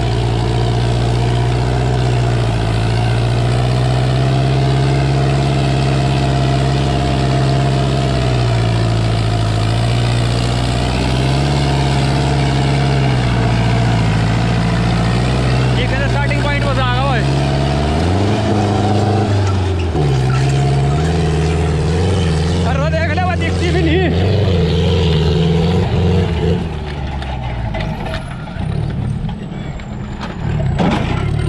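Sonalika DI-750 III tractor's diesel engine working under load as it pulls a disc harrow through soil. The engine note sags and recovers a few times, shifts about 18 seconds in, and drops in loudness near the end.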